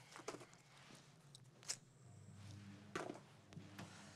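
Quiet handling sounds at a kitchen counter: a few light clicks and knocks, the sharpest about halfway through, with soft footsteps. A faint low hum comes in about halfway.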